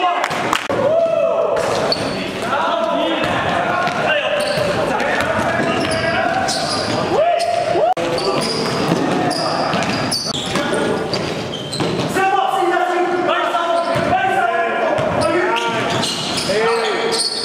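Live indoor basketball play: a basketball bouncing on the gym floor amid players' shouts and calls, echoing in a large hall.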